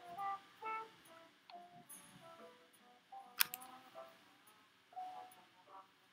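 Quiet background music of single plucked notes, one after another. A sharp click about three and a half seconds in.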